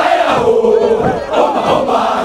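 Hundreds of soldiers shouting a unit yell in unison: one long, loud held shout that drops in pitch about half a second in, then breaks off and starts again with a new burst of voices.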